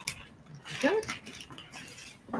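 Large sheet of decoupage paper rustling and crinkling as it is unfolded and held up by hand. About a second in comes one short, rising, whine-like voice sound.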